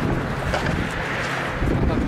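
Steady wind noise buffeting the microphone high on a bridge, with a low rumble.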